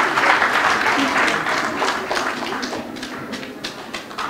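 Audience applauding in a hall, the clapping thinning and fading towards the end.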